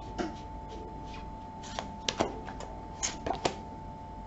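Tarot cards being handled and drawn from a deck: several light, sharp snaps and flicks of card stock at irregular moments.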